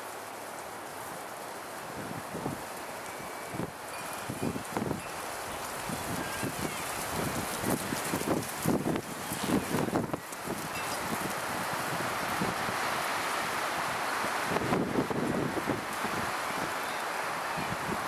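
Wind on the microphone and rustling in dry leaves and pine needles, with scattered soft crunches and thuds. The hiss grows louder in the second half.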